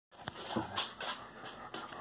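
A dog panting close by, with a faint short whine about half a second in.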